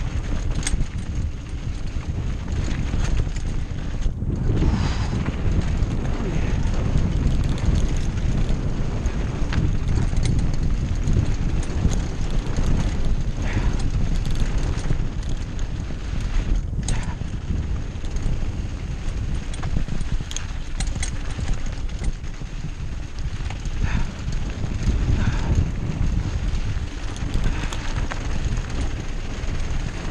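Diamondback Hook mountain bike ridden fast down a dirt trail, heard through an action camera: wind buffeting the microphone in a steady rumble, with tyres on loose dirt and the bike clattering and knocking over bumps at irregular intervals.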